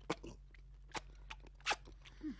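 Eating at a table: soft crunchy chewing, with three sharp clicks, the loudest near the end.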